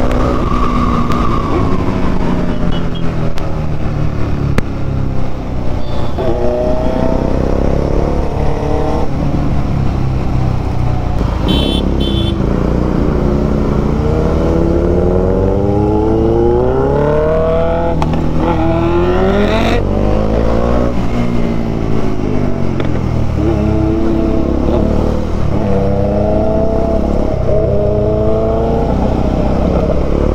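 A motorcycle engine heard from the rider's own bike, running at road speed over a steady rush of wind. The engine note rises and falls again and again as the rider accelerates, shifts gears and rolls off through traffic, with a long climbing run of revs in the middle.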